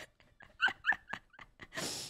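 A woman giggling softly: a run of about five short, squeaky bursts, each falling in pitch, then a breathy intake of breath near the end.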